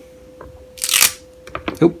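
A short rip of a Velcro adhesive strip being pulled apart, about a third of a second long near the middle, followed by a few light clicks and a man saying "Oops!". A faint steady hum runs underneath.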